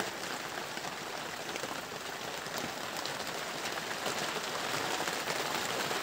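Steady rain, an even hiss with faint scattered drips, heard from inside a thatched hut.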